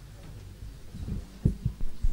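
Four or five dull, low thumps close together in the second half, over a steady low room hum: handling or knocking noise close to the microphone.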